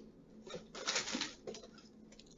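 Faint rustling and handling noises as items are moved about, in a few short bursts around the first second.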